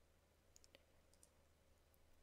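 Near silence with a few faint computer mouse clicks, a cluster about half a second in and another just after a second, over a low steady room hum.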